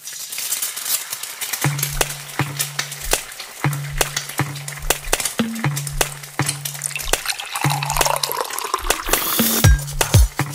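An egg sizzling in hot oil in a frying pan, under electronic dance music with a steady bass line and beat that comes in about two seconds in.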